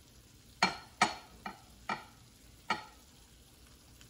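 Five light clicks and taps as small green chillies are picked off a plate and dropped into a frying pan of chicken and onions.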